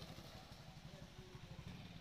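Faint, steady low rumble of an engine idling.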